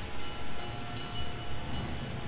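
Ambient electroacoustic music of glass and metal sounds: short high clinks at uneven intervals, a few each second, over a low rumble, with faint held tones ringing between them.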